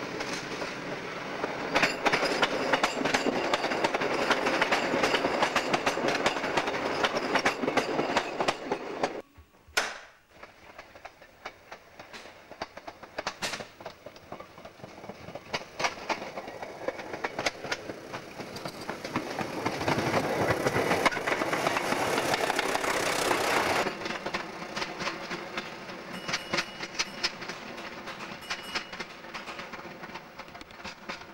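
British Rail Class 156 Sprinter diesel multiple units passing through a junction: a steady diesel engine note under loud, rapid clatter of wheels over rail joints and points. The noise cuts off suddenly about nine seconds in, builds again as a second unit draws close and passes, then drops suddenly to a quieter steady engine hum near the end.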